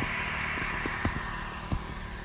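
Outdoor background noise: a steady low rumble, with a few faint ticks scattered through it.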